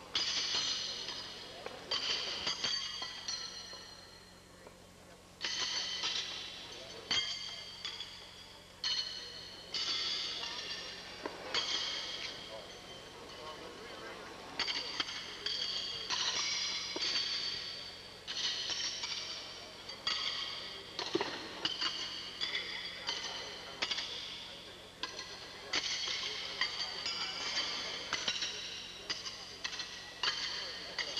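Steel horseshoes clanging against iron stakes and other shoes: sharp metallic clanks, each ringing briefly, at irregular intervals of about a second or two, some overlapping.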